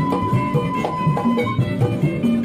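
Background music: an instrumental passage with held notes and changing chords.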